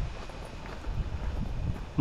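Outdoor background with an uneven low rumble of wind on the microphone and no distinct events.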